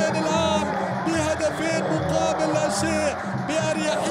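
Stadium supporters singing a chant over a steady drumbeat, with the noise of the crowd underneath.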